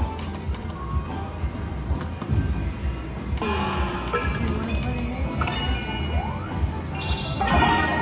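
Video slot machine playing a spin: game music with clinks and ding-like tones, and two louder bursts of chimes, one about halfway through and one near the end.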